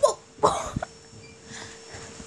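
A child coughing once, a short burst about half a second in.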